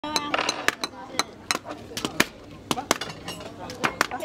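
Indistinct voices talking over irregular sharp clicks and knocks, about a dozen in four seconds, the knocks the loudest sounds.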